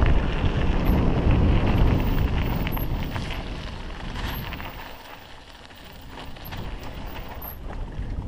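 Wind buffeting the camera's microphone and mountain bike tyres rolling over a gravel and dirt trail, with scattered rattles and clicks from the bike. The rushing fades about five seconds in and builds again near the end.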